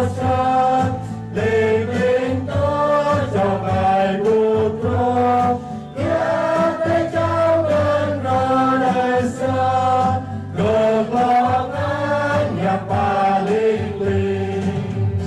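Small mixed choir of men and women singing a hymn together, accompanied by sustained chords on an electronic keyboard, with short breaths between phrases.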